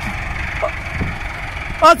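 Four-wheel-drive farm tractor's engine running steadily as the tractor climbs steel loading ramps onto a trailer.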